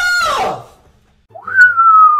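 A high-pitched vocal whine that falls in pitch and stops about half a second in, then after a short pause a single whistled note that rises briefly and slides slowly downward.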